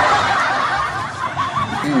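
A man snickering, with a short "hmm" near the end.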